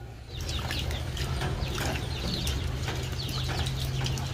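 Birds chirping: many quick, short chirps overlapping densely, starting about a third of a second in, over a steady low hum.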